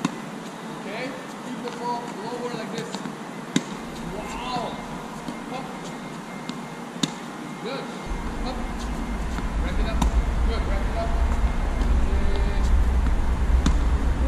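Tennis ball struck with a racket on backhand slice shots: a few sharp pops a few seconds apart. About eight seconds in, a low rumble comes up and the sound grows louder.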